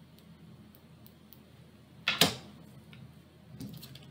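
Tarot cards set down on the table: a sharp double tap about two seconds in, with a few faint clicks of card handling before and after, over a low steady room hum.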